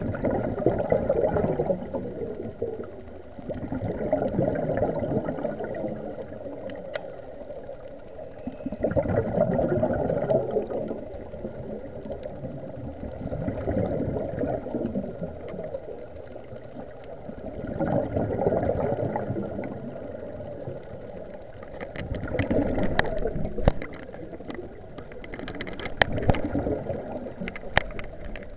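Scuba diver's exhaled air bubbling out of a regulator underwater, in rising bursts of gurgling about every four to five seconds with the rhythm of breathing. A few sharp clicks come near the end.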